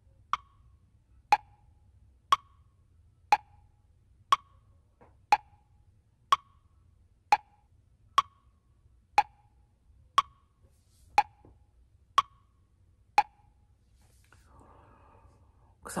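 Clock ticking tick-tock, about one tick a second, the ticks alternating higher and lower; it stops after about fourteen ticks.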